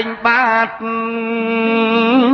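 A male singer chanting a Khmer chapei dang veng song: a few short sung syllables, then one long held note from about a second in, over the chapei long-necked lute accompaniment.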